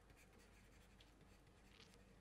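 Near silence: faint scratching and light ticks of a stylus writing on a tablet.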